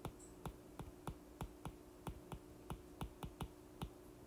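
Stylus tapping and clicking on an iPad's glass screen while handwriting, a quick irregular series of faint, sharp taps, about three or four a second.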